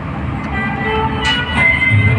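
Street traffic heard from a moving vehicle, with vehicle horns sounding.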